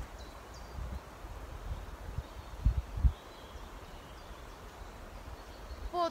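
Faint outdoor forest ambience: a steady soft rustle over a low rumble, with two short low thuds a little before the middle.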